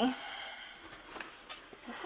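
Faint handling sounds of a cardboard shipping box being moved, with a few light knocks and rustles in the second half.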